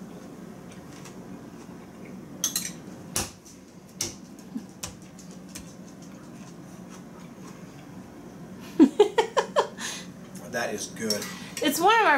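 A metal spoon clinking a few times against a ceramic soup mug while soup is eaten from it, with a steady low hum underneath.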